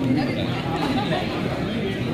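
Indistinct chatter of several people talking over one another, heard in a large room.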